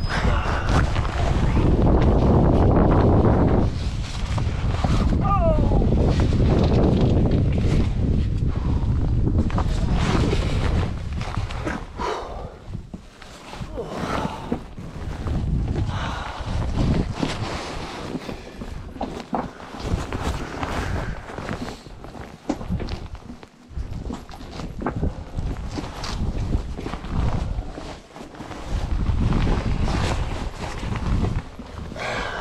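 A person crawling over loose rock in a narrow cave passage: clothing rubbing against the camera and knees and gloved hands scraping and knocking on stones. A heavy low rubbing rumble fills the first several seconds, then gives way to many short, uneven knocks and scrapes.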